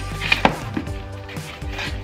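Thin cardboard magazine holder being folded and creased into shape by hand: sharp snaps and rustles of the board, two of them loud about half a second in.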